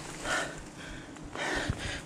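A person's breathing: three short breathy puffs.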